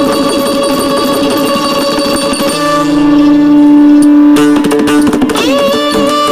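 Carnatic classical dance accompaniment led by a plucked string instrument. It plays quick runs of notes over a steady drone, holds one long note from a little before halfway, and breaks into bending, gliding notes near the end.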